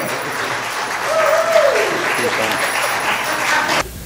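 Congregation applauding, with a voice or two mixed in; the applause cuts off abruptly near the end.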